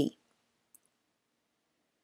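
The end of a woman's spoken word, then near silence with one faint, brief tick.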